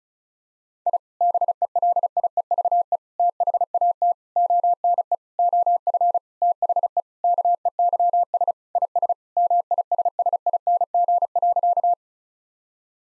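Morse code sent at 35 words per minute: a single steady mid-pitched tone keyed on and off in rapid dits and dahs, starting about a second in. It spells out the sentence 'I believe that one of the keys is missing', sent again after being spoken.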